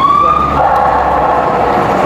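A passing motor vehicle: an engine note rising for about half a second, then settling into a steady road rumble.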